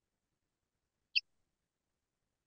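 Bat echolocation call, recorded with an ultrasonic microphone and slowed about 30 times so that it falls into the audible range: one short, high chirp about a second in.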